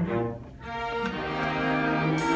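Small live orchestra playing, with violins and cellos to the fore; the passage drops quiet about half a second in, then swells again from about a second in.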